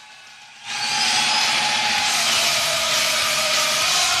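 A loud, steady rushing noise with a few faint held tones over it, coming in suddenly just under a second in: a sound effect laid into the radio goal broadcast between calls.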